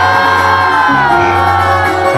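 Live regional Mexican band music: acoustic guitar with tuba bass notes. Over it a voice holds one long cry that slides slightly down in pitch and breaks off near the end.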